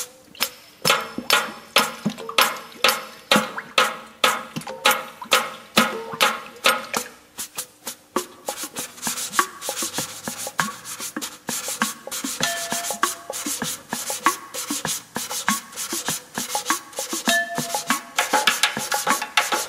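Matachines dance drum beaten in a quick, steady rhythm of strong strokes. From about eight seconds in the strokes turn lighter and denser under a high rasping hiss, with a few short pitched notes.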